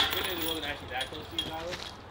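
Disc golf basket chains jangling and ringing down after a disc strikes them, with a few light clinks as they settle. Faint voices underneath.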